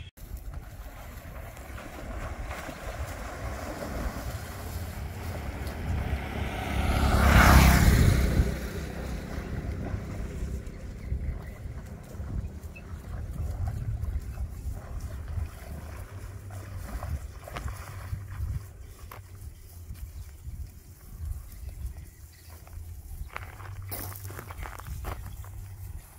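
Small Honda motorbike engine running, with wind buffeting the microphone. A loud rush of noise swells and fades about seven to eight seconds in.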